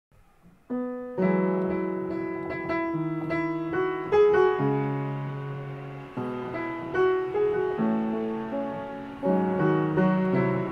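Solo upright piano. After a near-silent start, a single note enters about a second in, and full chords follow at an unhurried pace, each struck and left ringing as it fades.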